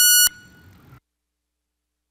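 A single loud electronic beep lasting about a third of a second, one steady high tone with overtones. After it there is faint room noise, and the sound cuts off to total silence about a second in.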